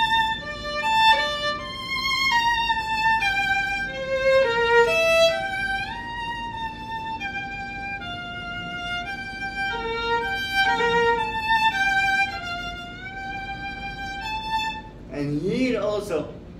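Solo violin, bowed, playing a melodic passage of sustained notes that step up and down, with wavering vibrato on the held notes and a few slides between pitches. A man's voice comes back in near the end.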